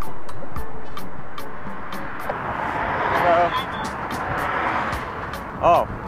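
Steady rush of road and wind noise beside highway traffic, swelling through the middle as vehicles pass and easing near the end, with a faint regular ticking above it.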